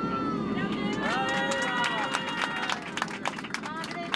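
Several voices exclaiming at once inside an airliner cabin, with scattered hand claps growing denser toward the end, over the steady drone of the cabin.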